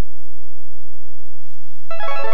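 Steady electrical hum with a few faint held tones, cutting out about one and a half seconds in. Just before the end, keyboard music starts abruptly.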